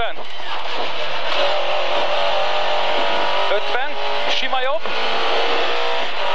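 Lada 2107 rally car's engine heard from inside the cabin, pulling hard at high revs with a fairly steady pitch, over loud road and cabin noise, as the car accelerates along a short straight between corners.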